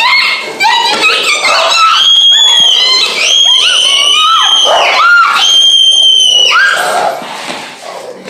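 A girl screaming with joy: short excited cries at first, then three long high-pitched screams, each held a second or more, before the sound falls away near the end.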